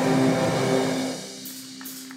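Live worship band (guitars, bass, drums, keyboard) ending a song on a held chord that fades away about a second in, leaving a faint low tone lingering.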